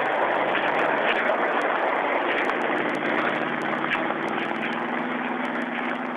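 Steady engine drone mixed with a broad hiss, holding at an even level throughout.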